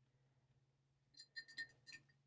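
Near silence with a faint low hum, then a few faint, light clinks of a small hard object in the second half.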